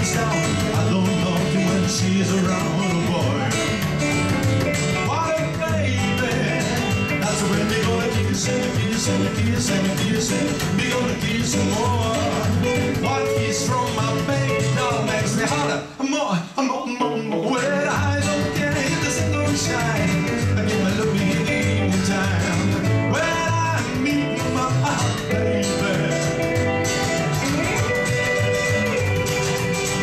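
Live rockabilly trio playing an instrumental break: hollow-body electric guitar lead over strummed acoustic guitar and upright bass. The whole band stops for a moment about sixteen seconds in, then comes straight back in.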